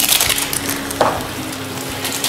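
Foil Maggi masala sachet crinkling and crackling as it is handled and emptied over the kadhai, with a sharper crackle about a second in.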